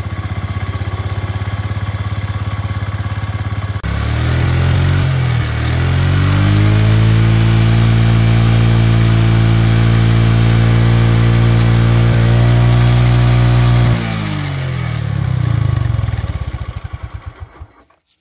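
Honda Eterno scooter engine idling, then revved up about four seconds in and held at higher revs. It drops back to idle and dies away in slowing pulses near the end. It runs smoothly with no timing-chain rattle despite over a lakh kilometres on an engine that has never been opened.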